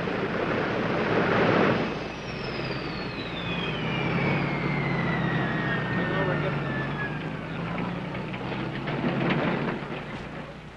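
Lockheed Super Constellation's radial piston engines running down at the gate, a low drone under a high whine that falls steadily in pitch over several seconds.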